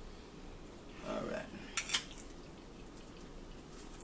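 A metal fork clinks twice against a plate just before two seconds in, with a faint murmur of a voice a moment earlier.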